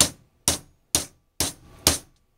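Hammer tapping five times, about two strikes a second, on a three-quarter-inch black iron pipe nipple over a spa pump motor's armature shaft, driving a new ball bearing onto the shaft by its inner race. Each strike is a short metallic knock with a brief ring.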